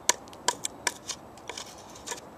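Spyderco Paramilitary 2 folding knife's S30V full-flat-grind blade cutting into a wooden log in quick strokes: a run of about six short, sharp scraping cuts over two seconds.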